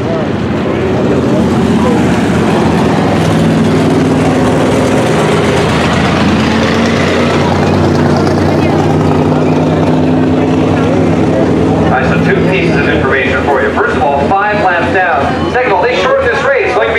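Several race car engines running at low, steady speed, as cars are lined up on a dirt oval before a race, their pitch holding with small steps. From about twelve seconds in, voices come over the engine sound.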